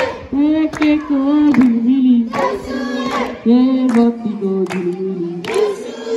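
A group of young men and women singing a Nepali Deusi song, held melodic phrases with short breaks between lines, amplified through a loudspeaker. Sharp hand claps come in at intervals over the singing.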